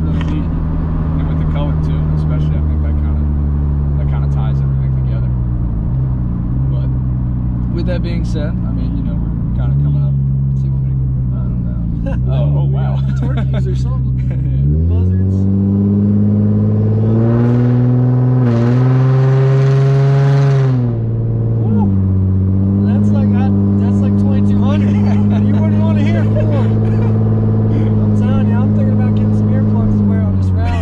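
Nissan 350Z's 3.5-litre V6 heard from inside the cabin while driving. The engine note wavers through a few shifts, then climbs sharply under hard acceleration about halfway through and holds high and louder for several seconds. It then drops back to a steady cruise.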